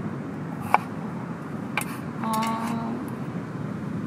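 Kitchen knife slicing a potato on a wooden cutting board: two sharp knocks of the blade striking the board about a second apart, over steady background noise.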